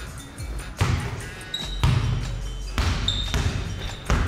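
A basketball being dribbled on a hardwood gym floor, a few bounces about a second apart.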